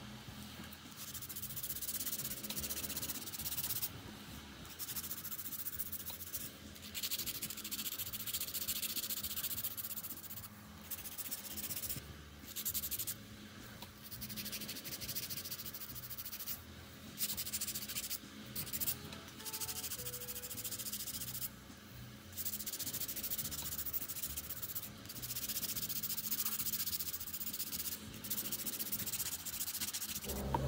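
Hand nail file rasping over acrylic nail extensions while shaping them, in runs of quick strokes a second or a few seconds long with brief pauses between.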